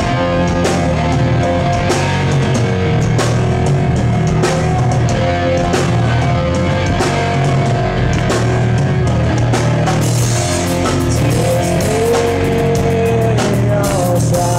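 Live rock band playing loud: electric guitars over a drum kit keeping a steady beat.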